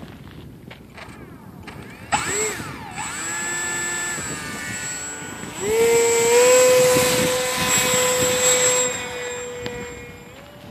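Electric motor and propeller of an EFX Racer RC plane on a 6S LiPo battery, whining. The throttle is blipped about two seconds in, the motor is held at part throttle, then it runs up to a loud, steady high-pitched whine at full power for the hand launch. The sound fades near the end as the plane climbs away.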